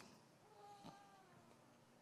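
Near silence: room tone, with a faint, brief pitched sound in the first half.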